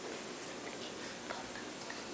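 Quiet hall room tone, a steady low hiss, with a few faint scattered ticks.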